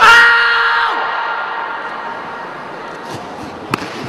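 A sudden loud yell held at one steady pitch for about a second, then dying away in a large hall's echo. A single sharp click comes near the end.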